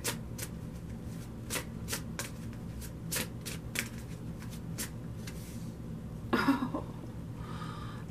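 A deck of tarot cards being shuffled by hand, with sharp card snaps about three times a second that thin out after the first few seconds.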